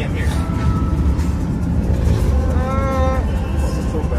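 Steady low road and engine rumble inside the cabin of a moving Audi SUV, with a person's voice briefly heard over it about two and a half seconds in.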